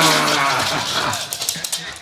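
Pembroke Welsh corgis play-growling, a drawn-out grumbling vocal sound that wavers in pitch, with rapid clicking and scrabbling from their play on a hard floor; it tails off near the end.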